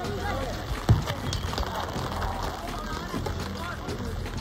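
Players' voices calling across a football pitch over a steady hiss of rain, with a single thud about a second in.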